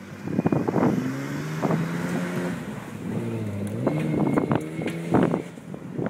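Toyota Land Cruiser engine revving hard as the SUV spins donuts on loose dirt. The pitch rises and falls with the throttle, dipping about halfway through and then climbing again.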